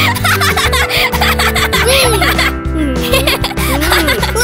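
Cartoon characters giggling and laughing in high, childlike voices over background music.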